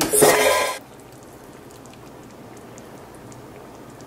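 A woman's voice briefly at the start, then a low, steady hiss of kitchen room noise with a few faint small ticks.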